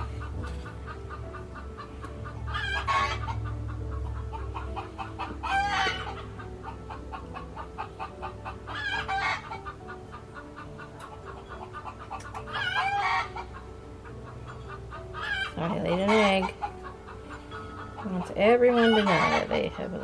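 Hens cackling the loud egg song, a call about every three to four seconds, loudest near the end: the sign that a hen has just laid an egg.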